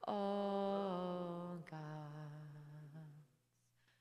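A woman's voice singing long, slow held notes into a microphone without clear words, stepping down in pitch twice before fading out about three seconds in, with no accompaniment heard.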